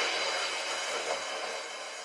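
The end of a pop song: the last reverberating wash of the final chord dying away steadily.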